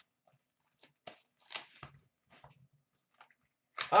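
Foil wrapper of a hockey card pack crinkling as it is handled and opened, in a few short, faint rustles.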